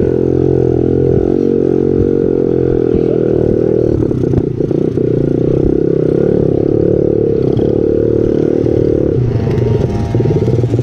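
Small four-stroke peewee dirt bike engine running under way over rough trail, a steady note that shifts near the end, with a clatter about four seconds in. The bike had taken in water and was not running right; the rider says it is starting to die.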